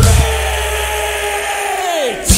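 A punk rock band's held, distorted guitar chord ringing over a low bass note while the drums drop out. Near the end the whole chord slides down in pitch and cuts off.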